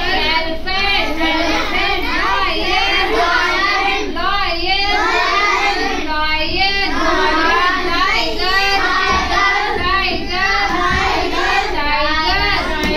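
A class of children singing together in chorus, many young voices overlapping without a break.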